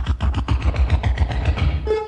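A fast, even rhythmic clatter of about seven or eight beats a second over a low pulse: the percussion of a broadcast disco/funk record or programme jingle, with a train-like chugging feel.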